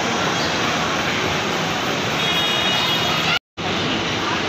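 Steady outdoor traffic and crowd noise, with a faint murmur of voices. The sound cuts out completely for a split second near the end.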